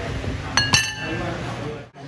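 Metal spoon and ceramic noodle bowls clinking: two quick ringing strikes about half a second in. The sound fades out just before the end.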